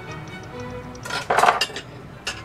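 A metal spoon scraping and clinking against a saucepan of simmering vegetables in broth, in one loud clatter just past the middle, over background music.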